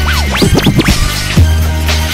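Vinyl record scratched on a turntable: a quick run of rising and falling scratches in the first second, over a hip-hop beat with a heavy bass line.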